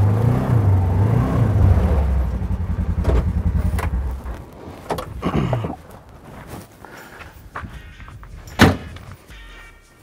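Polaris 1000 side-by-side engine running as it pulls up, pitch rising and falling, then winding down and stopping about five seconds in. Clicks of the door follow, and a sharp slam of the door near the end.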